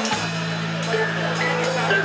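Rock band playing live: a sustained organ chord held over the bass, with light cymbal strikes.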